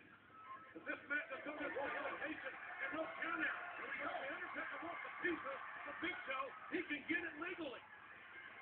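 Arena crowd cheering and shouting: many voices at once, swelling about a second in and staying loud.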